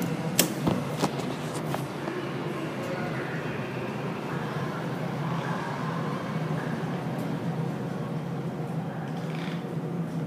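Montgomery Kone elevator: a few sharp button clicks in the first two seconds, then a steady low hum while the car's sliding doors close.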